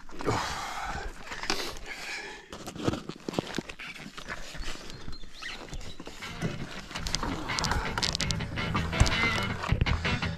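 Knocks, clicks and the rustle of bags as a loaded bikepacking bike is handled against a wooden field gate, with music coming in over the second half.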